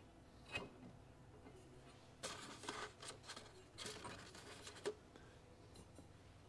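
Faint handling sounds as a paper paint strainer is fitted over a metal cup: a few scattered soft rustles and light knocks.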